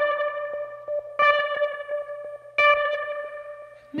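Song's instrumental gap: a guitar plays the same ringing note three times, about a second and a half apart, each one fading out before the next.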